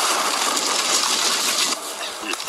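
Cartoon explosion sound effect: a steady rushing blast noise that drops away near the end.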